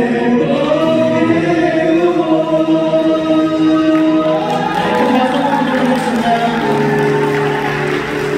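A song with singing and accompaniment, the voice holding long notes.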